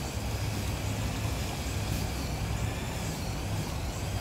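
A string trimmer (weed eater) running steadily, a constant motor drone with a faint wavering whine, over the splash of a small garden waterfall.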